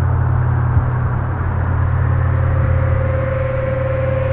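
A loud, steady low drone from a dark cinematic soundtrack, with a thin steady tone coming in about halfway through.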